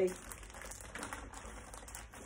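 Faint crinkling and rustling of a large sheet of bonded foil-lined crisp packets as it is lowered and laid flat on a table.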